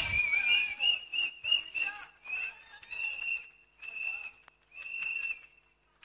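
High-pitched whistling at one steady pitch: a quick run of short notes, then three longer held notes, as appreciation after a performance.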